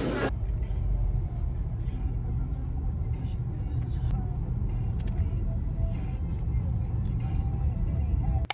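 Steady low rumble of road and engine noise heard inside a car's cabin while driving, starting abruptly just after the start.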